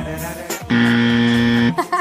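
Music, then about a second in, a loud steady buzzer tone held for about a second that cuts off abruptly: a quiz sound effect marking the move to the next question.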